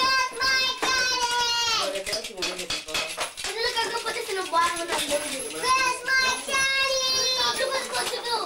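Children's high-pitched voices in play, drawn out into long held, sing-song sounds, twice for a second or two.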